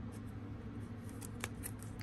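Hockey trading cards in plastic sleeves being handled and slid apart: faint scrapes and light clicks, one sharper click about one and a half seconds in, over a low steady hum.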